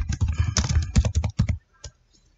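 Computer keyboard typing: a quick run of keystrokes for about a second and a half, then one last keystroke near the end.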